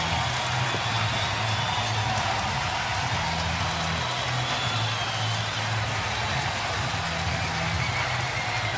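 Steady noise of a large stadium crowd cheering after a goal, with music playing over it, its deep bass notes changing every second or two.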